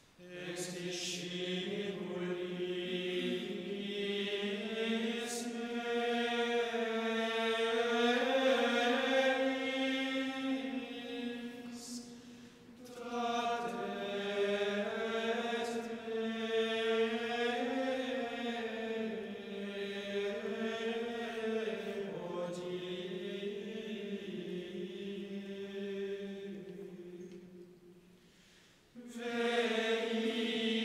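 Men's voices singing Gregorian plainchant in unison, a Tenebrae responsory sung after a Matins lesson. Two long phrases with a short breath about twelve seconds in and another near the end.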